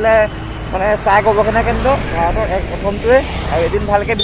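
A person talking, with a steady low rumble of passing road traffic underneath.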